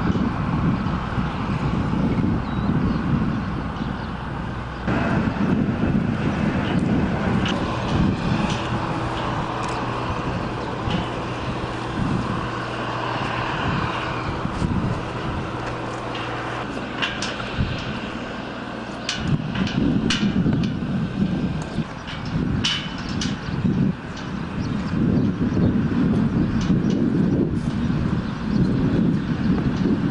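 Outdoor field ambience dominated by wind buffeting the microphone, an uneven low rumble. A steady low mechanical hum runs through the middle, and scattered sharp clicks come in the second half.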